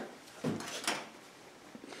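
Two short knocks about half a second apart, from something being handled at a kitchen stove and counter.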